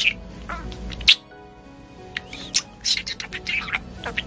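A budgerigar chattering fast, a rapid run of short chirps and squawky syllables in which it mimics Japanese phrases such as its own name, 'Love-chan'. There is a sharp click about a second in, and faint music plays underneath.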